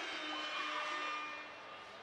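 Background noise of an arena crowd, with a faint steady tone held for about the first second and a half.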